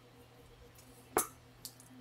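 One short knock on a wooden butcher-block cutting board about a second in, with a fainter tick just after, over quiet room tone with a low steady hum.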